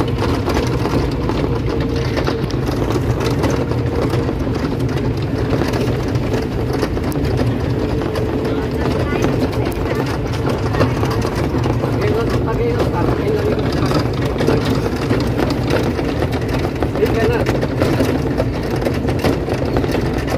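Battery-powered electric tourist cart driving along a paved path: a steady low rumble of tyres and wind with a faint steady tone over it.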